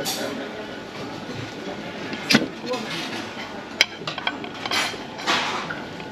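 A metal cheese knife clicking and scraping against a slate serving board and a china plate as a slice of soft cheese is cut and lifted onto the plate, with two sharp clinks standing out in the middle. Behind it runs a steady hum with distant voices.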